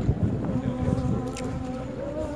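A group of voices singing a slow hymn softly, holding long, drawn-out notes.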